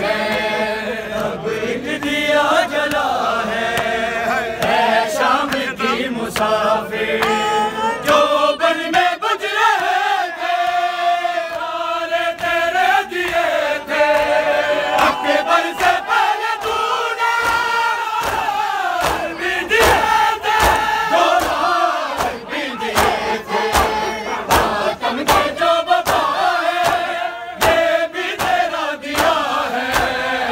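A noha, a Shia lament, chanted live by a group of men's voices, with a crowd joining in. Sharp rhythmic slaps of hands beating chests (matam) keep time, growing stronger in the second half.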